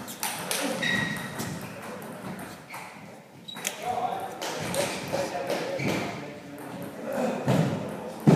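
Table tennis ball clicking off bats and the table in short, sharp knocks during a rally, echoing in a large sports hall, with people talking in the background.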